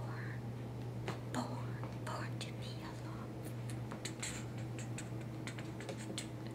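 A woman whispering softly, with a few small clicks, over a steady low hum.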